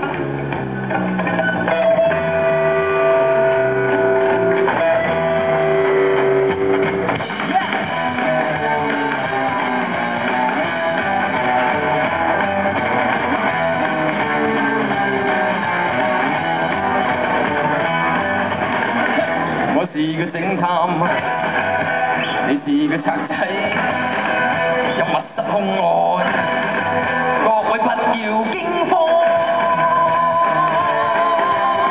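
A rock band playing live, with electric guitars and bass guitar. Long held guitar notes come a couple of seconds in, then the full band plays on.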